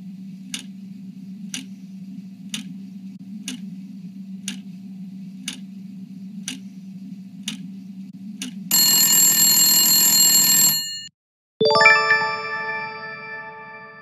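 Quiz-show countdown sound effect: a clock ticking about once a second over a low droning music bed. About nine seconds in, a loud buzzer sounds as time runs out. After a brief silence a ringing chime fades away as the answer is revealed.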